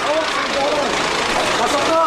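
Indistinct voices over a steady background noise.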